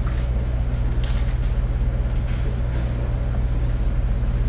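A steady low hum with faint room noise over it, unchanging throughout.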